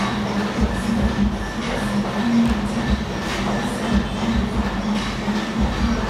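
A steady mechanical hum with a pulsing drone, under a constant noisy din and irregular low thuds of gym equipment in use.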